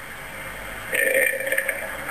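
Speech: a short pause with faint background hiss, then a man's drawn-out, hesitant "eh" about a second in.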